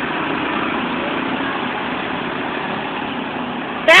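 Small engines of a lawn tractor and a quad bike running as they drive across the yard, a steady even drone with no revving.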